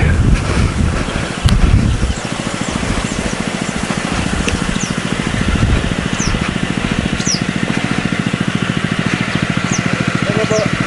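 A small engine idling steadily with an even, rapid beat, with louder rough knocks in the first two seconds. A few short bird chirps are heard in the second half.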